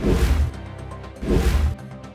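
Two loud whoosh-and-boom transition sound effects, each about half a second long: one right at the start and one just past a second in, both over steady background music. They mark the change from one news story to the next.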